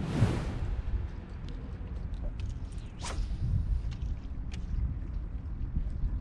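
Kayak paddle stroking into calm water with a short splash at the start, followed by a low steady rumble and a few light knocks and clicks from the paddle and kayak.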